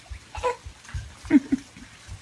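A baby giggling in short, high bursts, three times, over soft repeated low thuds.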